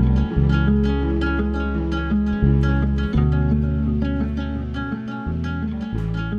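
Background music: plucked acoustic guitar over held bass notes that change every second or so.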